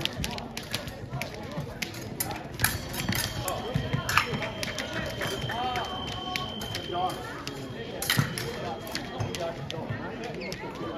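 Voices of people in a fencing hall, with scattered sharp clicks and taps from blades and footwork on the floor, and a steady high electronic tone lasting a few seconds in the middle.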